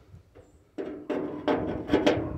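Trunk lock cylinder being pushed and seated into its hole in the sheet-metal trunk lid: a run of knocks and scrapes that starts about three-quarters of a second in.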